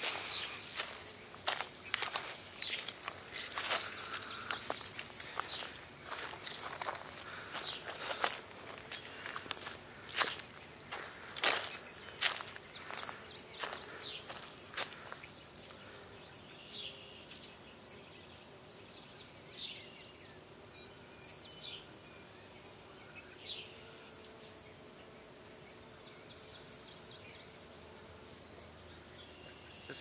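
A hiker's footsteps crunching on dry leaves and rocky trail, frequent for the first half and becoming sparse after about fifteen seconds. Under them runs a steady high-pitched insect chorus.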